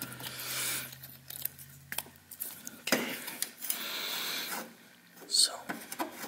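Wiring harness and plastic connectors being handled: rustling of braided cable sleeving in two stretches and a short sharp click near the end, over a faint low steady hum.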